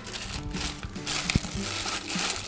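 Plastic packaging crinkling and rustling as a bagged parts packet is handled and unwrapped, with background music playing.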